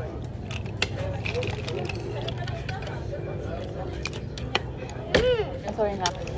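Scattered sharp clicks and clatter of oyster shells and cutlery on a plate over a steady low hum and faint background voices, with one loud, short voice call about five seconds in.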